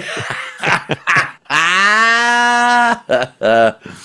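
Men laughing heartily: short breathy bursts, then one long held, drawn-out vocal note lasting about a second and a half, then more short bursts of laughter.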